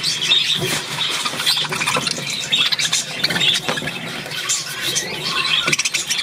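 A flock of budgerigars chattering, a continuous dense mix of high chirps, squeaks and clicks.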